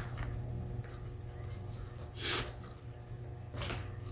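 Faint handling sounds of a plastic spudger working a laptop's battery connector off the motherboard: a small click at the start, then two short soft scraping swishes about two and three and a half seconds in, over a steady low hum.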